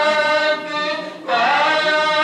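A man singing a manqabat, a devotional song in praise of a Sufi saint, into a microphone, holding long notes. He breaks off briefly a little after a second in and comes back in on a rising note.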